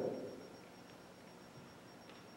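Near silence: room tone in a pause of speech, with the last word of a man's voice through a microphone dying away in the first half second.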